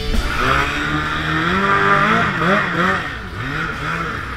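A racing hydroplane's outboard motor running under way, its pitch climbing as the throttle opens, then rising and falling in quick waves before dropping briefly about three seconds in and picking up again.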